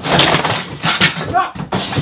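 Raised voices in a scuffle, with rustling and bumping noise from a handheld camera being jostled close to the microphone.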